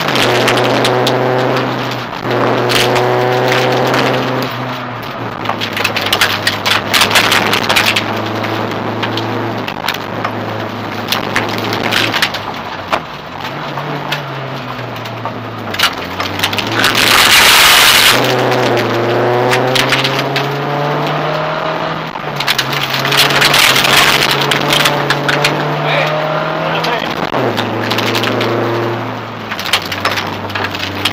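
Rally car engine heard from inside the cabin at full stage pace, its pitch climbing and then dropping sharply at each gear change, with a falling run as it slows about 13 to 16 seconds in. Gravel clicks against the car throughout, and a loud rush of noise comes about 17 seconds in.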